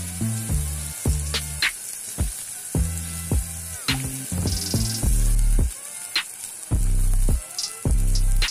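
Background music with a bass line and a steady beat. Under it is the sizzle of chopped onions, garlic cloves and curry leaves frying in a steel pan.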